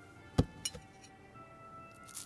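Tableware at a café table: one sharp knock about half a second in, then two light glassy clinks, like a spoon against a glass dessert dish. Soft background music with held notes runs underneath.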